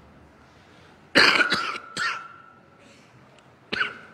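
A man coughing hard close to a microphone: a fit of three coughs about a second in, the first the loudest, and one more short cough near the end.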